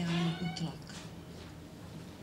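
A man's voice drawing out the last word of a sentence into a microphone, ending within the first second, then a pause with only the hall's room tone.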